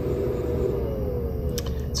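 Steady low electrical-mechanical hum with a thin whine that slowly falls in pitch: the cooling fan of the battery test unit winding down after the battery's BMS has cut the discharge.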